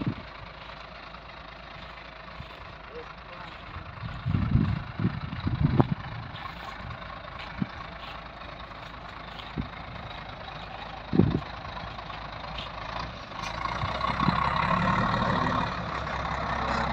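Concrete mixer truck's diesel engine running steadily at idle, growing louder about three-quarters of the way through. A few short low thumps break in, mostly around a third of the way through.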